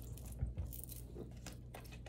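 Faint handling noise: light clicks and rustles, with a soft knock about half a second in.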